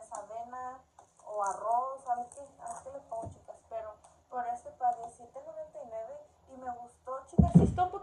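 A woman talking in Spanish, with a dull low thump near the end.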